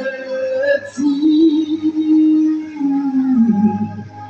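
Family vocal quartet singing a gospel song in harmony, holding one long note that slides down near the end.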